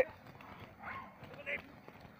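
Runners' feet landing on a dirt track, some of them barefoot; the sound is quiet and faint. A brief faint voice is heard about one and a half seconds in.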